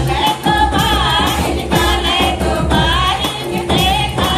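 A group of women singing a folk song together in unison, with wavering held notes, over regular drum beats that keep time for the dance.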